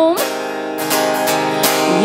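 Acoustic guitar strummed in a few chord strokes, the chords ringing between sung lines, with the tail of a held sung note at the very start.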